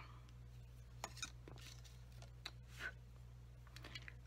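Nearly quiet room with a steady low hum and a few faint light clicks and taps, a couple about a second in and two more near the three-second mark, as a plastic embossing-powder tub, a paintbrush and a spoon are handled on the desk.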